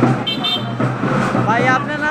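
Busy street noise of a walking procession: crowd voices over a steady low hum, with a brief high-pitched toot about a quarter second in and a voice rising near the end.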